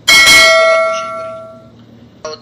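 Notification-bell sound effect: one bright ding, struck once and ringing out, fading away over about a second and a half.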